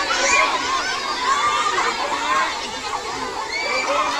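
A crowd of many children shouting and chattering at once: a steady din of overlapping high voices.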